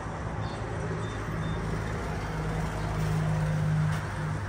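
Steady low hum of an idling vehicle engine at a gas station, growing a little louder near the end, with a few faint short high beeps in the first second and a half.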